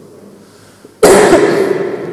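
A man's sudden, loud cough close into a handheld microphone, starting about a second in.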